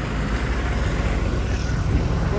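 Road traffic passing, a steady low rumble with a lorry going by close.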